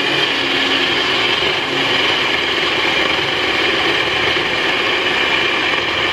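NutriBullet 1200 Series blender motor running steadily and loudly, its blade puréeing a full jar of garden vegetables and vegetable stock into soup.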